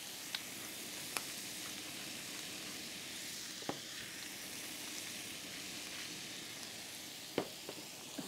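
Ribeye steaks sizzling steadily as they sear in a hot oiled frying pan on high heat, over the low hum of the downdraft hob's extractor fan drawing the cooking fumes down. A few light clicks stand out along the way.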